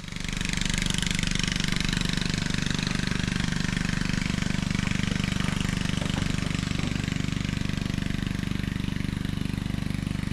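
A motor vehicle engine running steadily at a constant pace, with a fast, even pulse, heard while riding along a dirt track.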